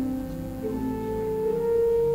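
Pipe organ playing slow, sustained chords, each note held steady for a second or more before moving to the next.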